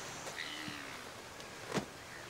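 Quiet outdoor ambience with a few faint short calls, and a single sharp hit about three-quarters of the way through, the loudest sound.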